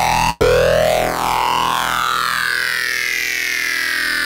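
Heavily distorted synthesizer note from Bitwig's Polymer, played through Bitwig's Amp device. It cuts out briefly about a third of a second in, then sounds again and is held, its tone sweeping up and down as the amp's settings are modulated.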